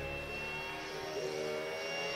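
The last chord of a rock song ringing out, a sustained stack of steady tones with one tone gently rising in pitch from about halfway through.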